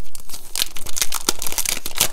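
Transparent plastic sticker sheets crinkling and crackling as the sticker book's pages are handled and flipped, a quick run of crackles that is thickest through the middle.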